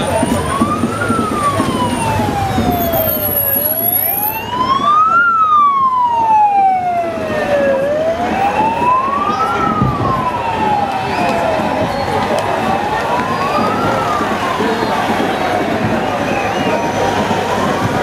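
Police escort siren wailing, rising and falling slowly about every four seconds, with a second, higher siren sweeping alongside it for a few seconds in the middle, as escort motorcycles and SUVs drive past, over steady street and crowd noise.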